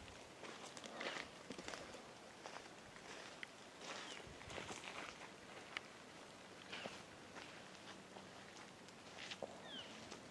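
Faint, irregular rustles and light taps, with a couple of brief high chirps, one about four seconds in and one near the end.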